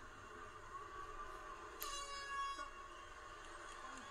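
Arena horn sounding once for under a second, about two seconds in, marking the end of a UFC round, over a steady crowd murmur from the fight broadcast.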